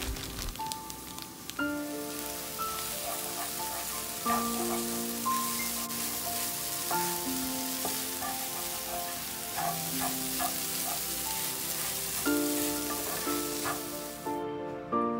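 Scrambled eggs sizzling steadily as they fry in a frying pan. Slow melodic background music plays over it from about a second and a half in.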